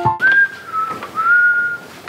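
A person whistling a short phrase: a high note that slides down, a brief break, then a slightly rising note held for about half a second.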